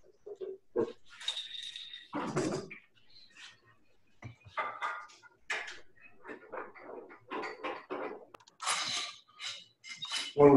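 Irregular knocks, scrapes and clicks of a square wooden blank being handled on a small wood lathe's drill chuck and spindle while the lathe is switched off, a few with a brief metallic ring.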